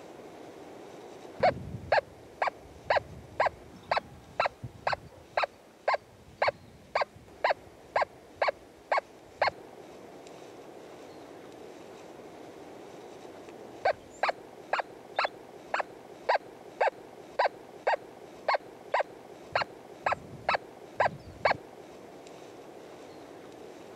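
Nokta Force metal detector in two-tone discrimination mode sounding a short target beep each time the coil passes over a buried metal target, about two beeps a second. Two runs of beeps, each lasting about eight seconds, with a pause of about four seconds between them.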